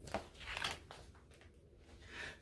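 Paper rustling as a picture book's page is handled and turned: a few soft crinkles and flicks in the first second or so.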